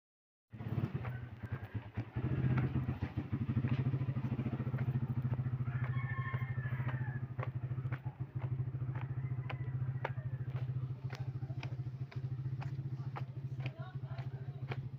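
A small engine running at a steady speed, with a fast, even putter and scattered faint clicks.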